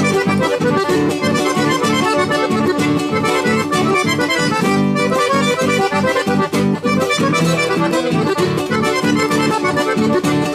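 Two piano accordions playing a tune together over a steadily strummed acoustic guitar, with a regular pulsing beat of a few strokes a second.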